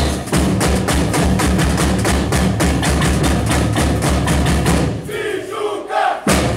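Samba bateria drumming: snare drums playing a fast, dense rhythm over deep Gope surdo bass drums. The drumming stops abruptly about five seconds in, and shouting voices follow.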